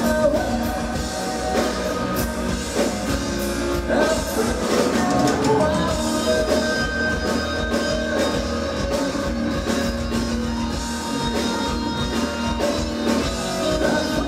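Live progressive metal band playing loudly and continuously: sung lead vocals over electric guitar and a drum kit, heard from the audience in a club.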